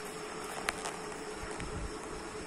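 Handling noise from a phone as it is turned round in the hand: one sharp click about two-thirds of a second in and low rumbling near the end, over a steady faint room hum.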